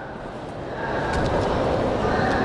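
Steady rushing background noise with no clear source, building up over the first second and then holding level.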